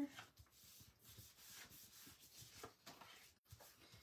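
Faint rubbing and rustling of paper as a sheet of patterned paper is pressed and smoothed onto a glued kraft envelope flap by hand.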